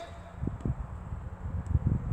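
Wind rumbling on the microphone, with a few faint soft knocks.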